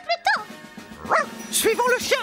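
Pluto, the cartoon dog, giving several short, yipping barks over light background music.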